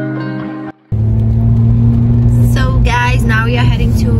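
Background music cuts off under a second in. Then the steady drone of a car's engine and tyres is heard from inside the cabin while driving, with a voice joining about two and a half seconds in.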